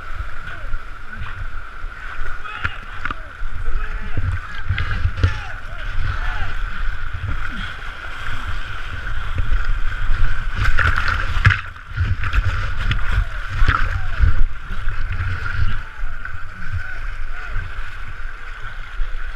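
Loud rushing whitewater of a flooded mountain creek, heard from a camera held at water level by a swimmer in the rapids, with a heavy low rumble and repeated splashing surges as the water breaks over the camera.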